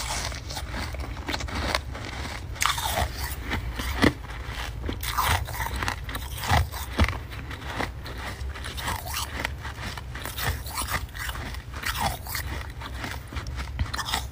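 Close-miked chewing of a mouthful of powdery freezer frost: a dense, unbroken run of crackly crunches, with a few louder bites.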